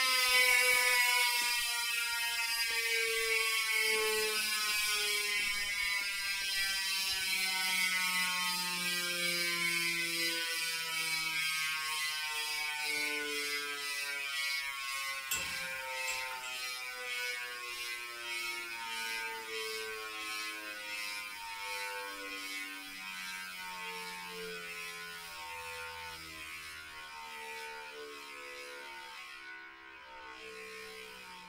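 Chris King rear hub's freehub ratchet buzzing as the rear wheel spins freely on the stand, the clicks slowing and fading as the wheel coasts down. One sharp knock comes about halfway through.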